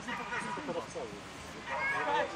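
Belgian Tervuren giving short, wavering, high-pitched whines and yips, excited while running an agility course. Faint background chatter sits underneath.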